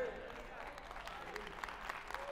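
Faint scattered applause from a congregation, with a few distant voices among it.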